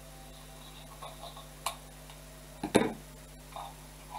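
Artificial flower stems and decorative picks being handled and shifted in a vase: a sharp click about a second and a half in, then a louder short knock with a rustle near three seconds in.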